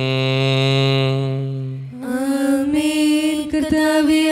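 Liturgical chant sung as long held notes: a man's low note sustained steadily, then about two seconds in a higher held note takes over.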